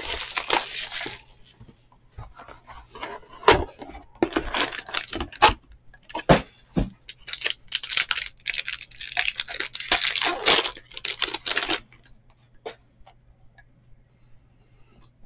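Cardboard box and a foil trading-card pack being torn open by hand: irregular bursts of tearing and crinkling, with a few sharp clicks.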